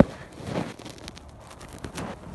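Handling noise from a phone being fumbled: a sharp knock right at the start, then rustling and scattered light clicks.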